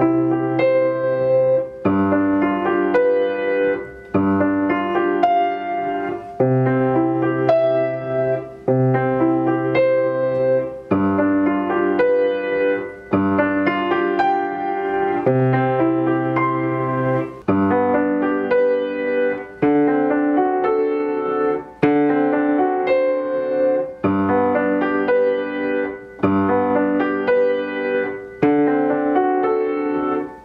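Acoustic grand piano playing a slow moderato study in held chords. The sustain pedal keeps each measure ringing and is lifted at the measure's end, so the sound breaks off briefly about every two seconds.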